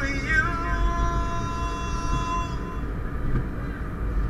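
A singing voice holds one long, steady note for about two seconds before fading out, over a constant low rumble.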